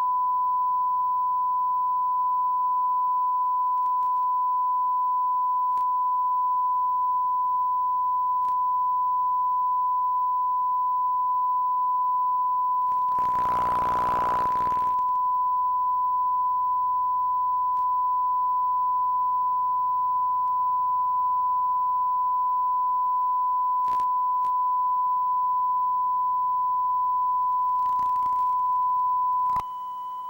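Steady 1 kHz sine test tone recorded on a VHS tape, one unchanging pitch, with a short burst of hiss about halfway through. The tone drops out for a moment right at the end.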